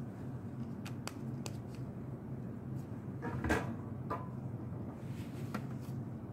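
Criterion II urine chemistry analyzer at work, printing out a strip's results: a low steady hum with scattered light mechanical clicks and one brief louder mechanical sound about three and a half seconds in.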